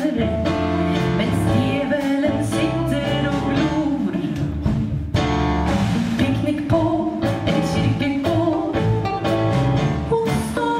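A woman singing lead with a live band: electric guitar, electric bass and a drum kit playing a steady beat behind her.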